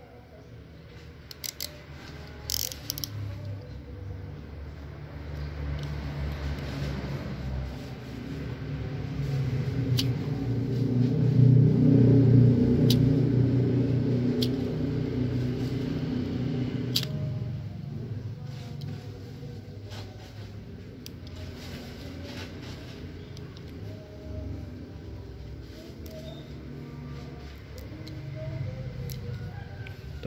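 A passing motor vehicle: a low engine hum swells to its loudest about twelve seconds in, then fades away. A few sharp ticks come from a snap-off cutter knife slicing a green grape scion.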